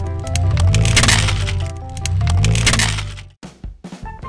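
Hard plastic toy cracking and snapping as it is crushed under a car tyre, with heavier bursts of cracking about a second in and again near three seconds. Background music plays throughout.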